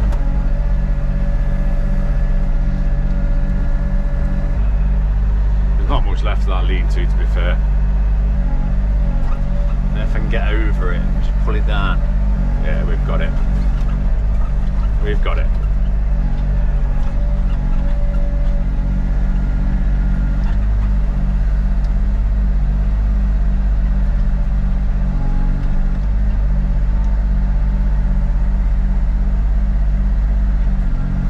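Excavator diesel engine running steadily, heard from inside the closed operator's cab as a loud low hum. The note shifts slightly a few times as the arm is worked.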